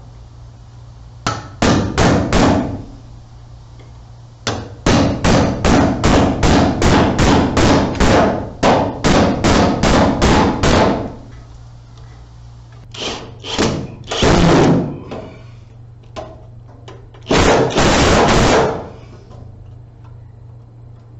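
Hammer nailing a blue plastic electrical box to an overhead wooden ceiling joist. A few blows come first, then a steady run of about fifteen strikes at two to three a second, then shorter groups of blows near the end.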